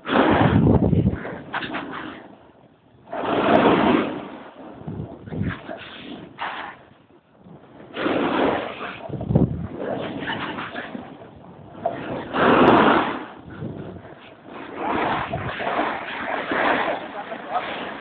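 Wind rushing over the microphone and snowboard edges scraping across snow during a downhill run. The sound comes in loud surges a few seconds apart.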